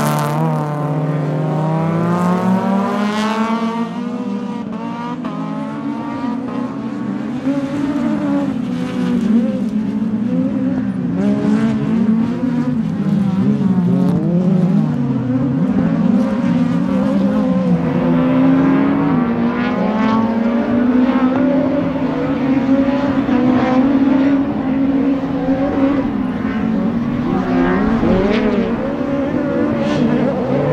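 Several STC-1600 rallycross cars, among them a Škoda Fabia Mk1, racing at high revs, their engine notes climbing and dropping over and over through gear changes and lifts.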